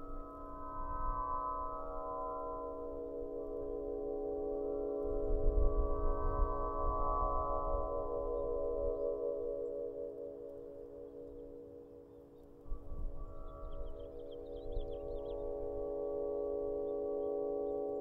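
Celtic harp played by the wind like an aeolian harp: its strings hum a sustained chord of several held tones that swells and fades with the gusts, loudest about six seconds in and dipping to its quietest just before two-thirds of the way through. Wind rumbles on the microphone at the same time.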